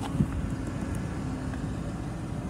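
A Ford Crown Victoria Police Interceptor's 4.6-litre V8 idling, a steady low hum heard from inside the cabin with the air conditioning running.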